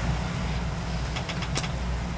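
A pause between speech: a steady low hum of room tone, with a few faint clicks.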